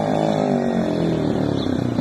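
Motomel X3M enduro motorcycle's engine running as it approaches, its pitch falling steadily as the throttle eases off.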